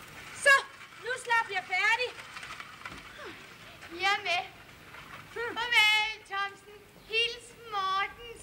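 A person's voice calling out in short, high-pitched phrases, several times.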